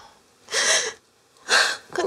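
A woman crying, drawing two sharp sobbing breaths about a second apart.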